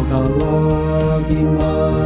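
Gospel song sung in four-part harmony, the voices holding long notes in slow-moving chords over a steady, light beat.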